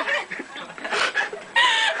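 Women laughing, ending in a short, loud, high-pitched squeal near the end.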